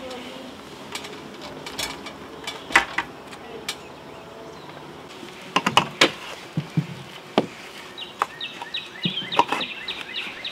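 Yellow jackets buzzing around an opening in a house soffit, a faint steady hum, with scattered sharp knocks and rustles from handling in the soffit. Bird chirps come in near the end.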